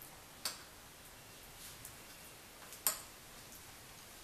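A metal spoon clinking against a bowl and glass while carrot halwa is spooned on top of a layered dessert glass: two short clicks, a light one about half a second in and a sharper one near three seconds.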